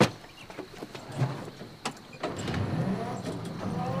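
A few light clicks and knocks, then an electric cargo tricycle's motor starts up a little after two seconds in, with a low hum and a whine that rises in pitch as it pulls away.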